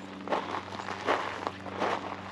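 A few footsteps on dry dirt ground, about three soft scuffing steps spaced under a second apart.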